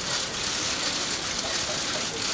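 A dense, steady clatter of many press camera shutters firing together.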